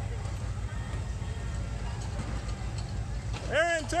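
Go-kart engines running steadily as karts circle the track, heard as a low drone. A word is shouted loudly near the end.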